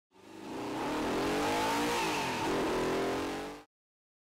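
Porsche Panamera Turbo's twin-turbo V8 driving at speed, its engine note rising and falling in pitch over the hiss of tyres and wind. The sound fades in and fades out again shortly before the end.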